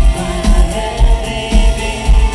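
Live synth-pop band music, loud, with a heavy kick drum about twice a second under sustained synth lines, recorded from within the audience.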